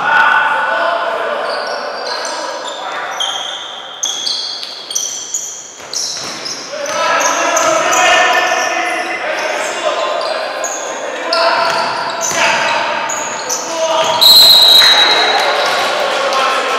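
Basketball game in play in a reverberant gym: many short sneaker squeaks on the court floor, the ball bouncing and players calling out, with a short, loud whistle blast near the end.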